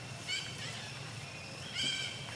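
Infant long-tailed macaque squealing twice in short, high-pitched, arching cries, one about a third of a second in and a longer, louder one near the end. These are the cries of a hungry infant begging to nurse from a mother who is refusing it.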